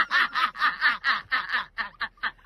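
Women laughing hard, a quick run of short 'ha' sounds at about six a second.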